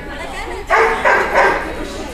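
A dog barks twice in quick succession, loud, a little after the first half-second.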